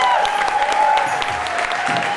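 Live club audience applauding just after a song ends, with wavering, sliding high-pitched tones over the clapping.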